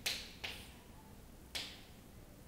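Chalk striking and scraping on a chalkboard as characters are written: three short, sharp chalk strokes, at the start, about half a second in, and about a second and a half in.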